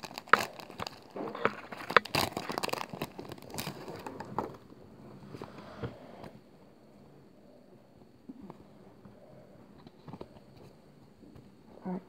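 Foil Pokémon booster pack wrapper crinkling and tearing as it is pulled open by hand: a dense run of crackles for the first four seconds or so, then only faint handling of the cards.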